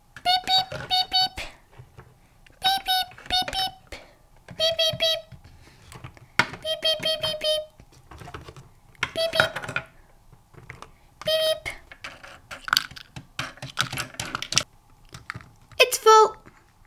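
Toy cash register scanner beeping as small toy groceries are scanned: short electronic beeps in quick groups of two to four, a few seconds apart. Light plastic clicks and clatter of the toy items being handled come in between.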